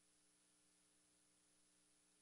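Near silence: only a faint, steady hum and hiss of the feed's noise floor.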